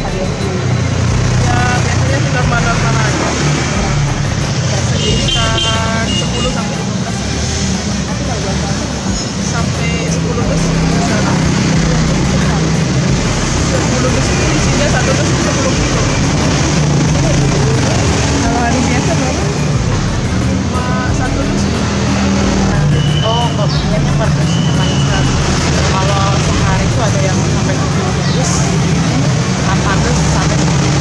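Steady street traffic noise, with vehicles running past in a continuous low rumble. A vehicle horn toots briefly about five seconds in.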